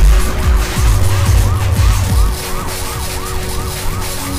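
Glitchy IDM electronic music: a siren-like synth tone rising and falling about two to three times a second over heavy bass kicks, which drop out a little past halfway.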